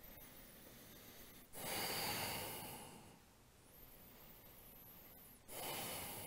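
A man breathing audibly while holding downward dog, heard as two long breaths through the nose or mouth. The first starts about a second and a half in and fades over a second and a half; the second starts near the end.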